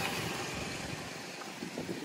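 A small motorcycle passing close by and fading away as it moves off.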